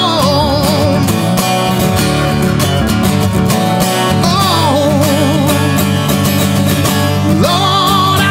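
A man singing over a strummed steel-string acoustic guitar. The guitar strumming runs steadily, and sung phrases come in near the start, about halfway through and again near the end.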